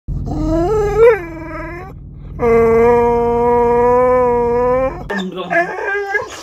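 Rottweiler/Shepherd mix dog whining, begging for a treat: two long drawn-out whines, the first wavering and rising in pitch, the second held at one steady pitch for about two and a half seconds. Shorter choppy whimpers follow near the end.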